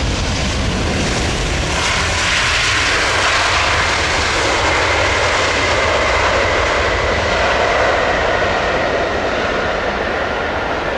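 British Airways Boeing 747-400's four jet engines running as the airliner rolls out along the runway after landing. The sound is a loud, steady rush, with a high whine that comes up about two seconds in and holds.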